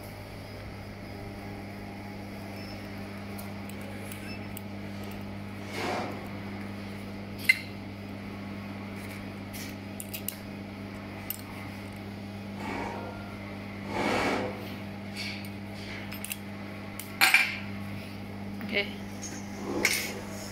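Metal parts and tools clinking and knocking on a steel workbench as a laser welding gun and its nozzle tips are handled, with a few sharp clicks and short rustling bursts. A steady low electrical hum runs underneath.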